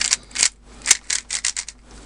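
Plastic layers of a YJ ChiLong 3x3 speedcube being turned quickly by hand: a rapid, irregular string of short clicks and scrapes, about ten in two seconds, the sharpest near the middle. The cube is unlubricated and very tightly tensioned, so it turns dry and stiff.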